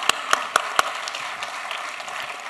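An audience applauding, with four sharp claps standing out in the first second before the clapping settles into a steady patter that thins out.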